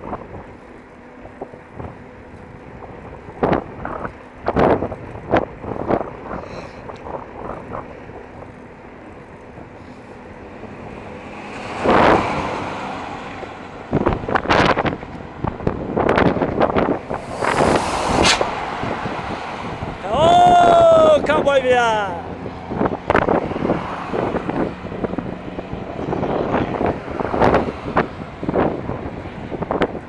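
Wind buffeting the microphone of a bicycle coasting fast downhill, with irregular gusts and knocks throughout. A louder rush swells about twelve seconds in, and again a few seconds later. About twenty seconds in, a pitched tone with overtones bends downward for a second or two.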